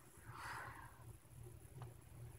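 Near silence: room tone with a low steady hum, a brief soft hiss about half a second in, and a faint click near the end.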